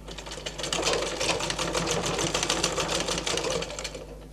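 Household sewing machine stitching a seam: a rapid, steady run of needle strokes that starts about half a second in and stops just before the end.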